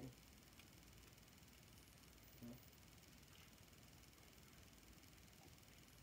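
Near silence: room tone, broken once by a single short spoken word.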